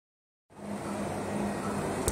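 Turbocharged Mercedes 290GD five-cylinder diesel engine running steadily. The sound cuts in about half a second in, after silence.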